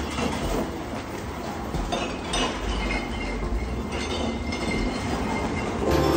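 Loaded wire shopping carts being pushed, their wheels rolling and rattling over the pavement and the doorway threshold.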